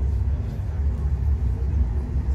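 Steady low rumble of a moving vehicle, heard from inside its cabin.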